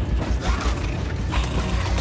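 Dense battle sound mix: a fast, low pulsing rumble under creaking and clattering, with a couple of sharper noisy hits about half a second and a second and a half in.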